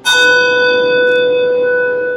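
A brass handbell struck once, its tone ringing on and slowly fading. It is rung in remembrance just after a name is read.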